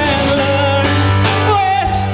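Live solo performance: a man singing long held notes over a strummed acoustic guitar.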